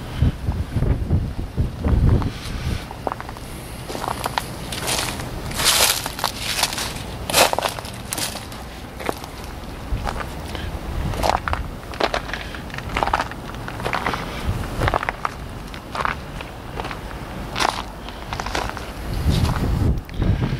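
Footsteps crunching over dry leaf litter and gravel at an uneven walking pace, about a step a second, with a low rumble underneath.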